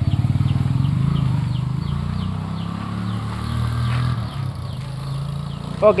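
An engine idling steadily with a fast, even low pulse, fading away about four seconds in. A short high chirp repeats over it, two or three times a second.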